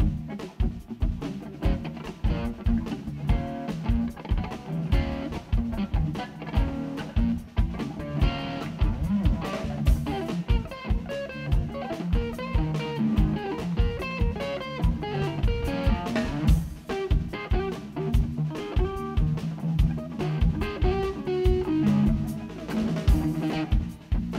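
Live rock band playing an instrumental passage: electric guitar playing melodic lines over a steady drum kit beat.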